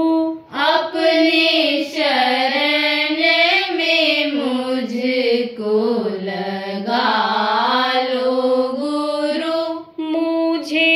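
A single voice singing a slow devotional chant in long held notes that glide up and down, with a short breath just after the start.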